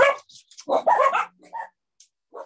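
A dog barking briefly: one loud bark a little over half a second in, then a softer one.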